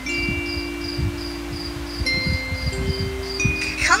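Background music of chime-like held tones, with the chord changing about halfway through, over a short high tone that pulses about three times a second.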